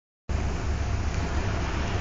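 Floodwater rushing down a street: a steady rushing noise with a heavy low rumble, starting abruptly a quarter second in.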